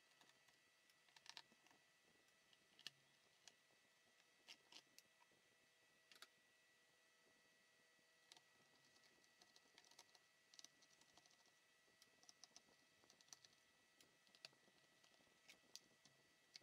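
Near silence: faint room tone with a steady faint high tone and scattered faint small clicks.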